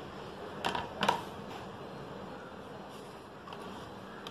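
Faint steady background hum, broken by two light clicks less than half a second apart, about a second in.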